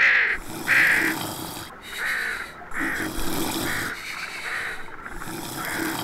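A series of short, harsh animal calls, about nine of them repeating every half second to a second.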